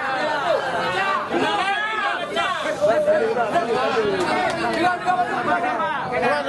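A crowd of men talking and calling out all at once, a continuous hubbub of overlapping voices.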